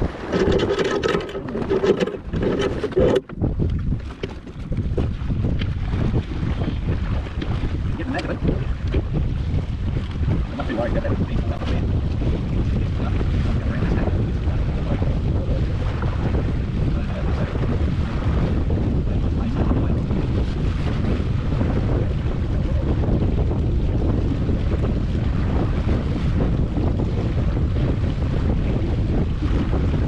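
Steady wind buffeting the microphone, with water rushing along the hull of a small wooden sailing dinghy under way.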